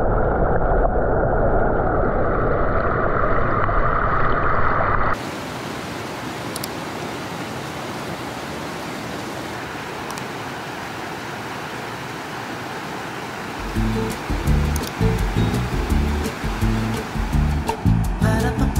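Rushing river water heard muffled through an underwater camera for about five seconds, then, after a sudden cut, the steady full rush of water pouring over a weir. Background music with a beat comes in near the end.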